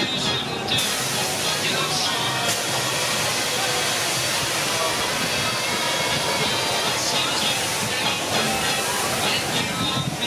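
Amusement-ride ambience: voices and music over a steady rushing hiss that sets in about a second in.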